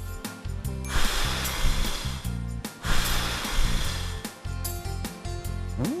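Someone blowing out candles: two long puffs of breath, each a rush of air lasting over a second, played as a sound effect over soft background music.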